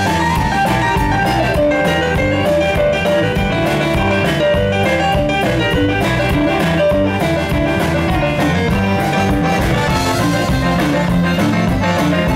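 Live band playing an instrumental passage without singing: a stage piano played over electric bass, electric guitar and drum kit, the drums keeping a steady beat.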